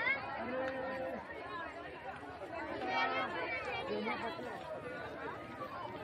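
A crowd of many people talking at once, overlapping voices with no single speaker standing out.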